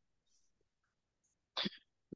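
Near silence, then about one and a half seconds in a single short, sharp burst of a person's voice.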